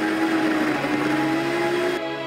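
Happycall Axlerim Z high-speed blender running, blending ice into sorbet, its motor pitch climbing slightly in the second half, with background music.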